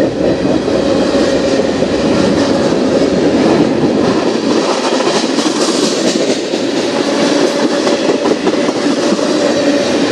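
Freight train tank cars rolling past at close range: a steady rumble of wheels on rails with clicks from the wheels, heaviest about halfway through. A faint steady whine runs under it.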